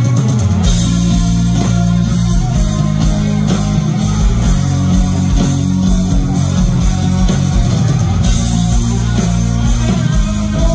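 Live rock band playing loud and steady without vocals: electric guitars over bass guitar and drum kit, heard from the audience through the stage sound system.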